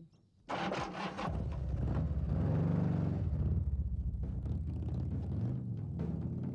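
A motorcycle engine running, coming in suddenly about half a second in, its pitch rising and falling.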